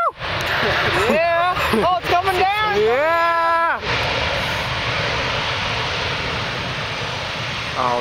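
Boeing 737-800's CFM56 jet engines running loud and steady as the airliner rolls out on the runway after landing, a constant rushing noise. Over it, for the first few seconds, spectators let out several excited whoops and held cheers.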